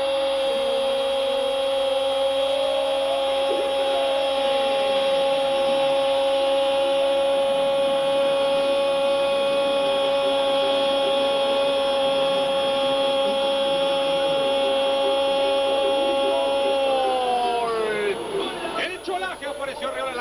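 A football commentator's long, held cry of "gol" for a goal, sung on one steady high note for about seventeen seconds and then dropping in pitch as it ends.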